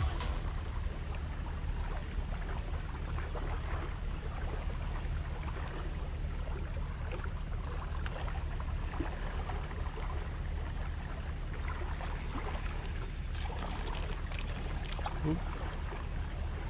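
Steady outdoor riverbank noise: a constant low rumble of wind on the camera microphone, with faint water sounds and a few small ticks.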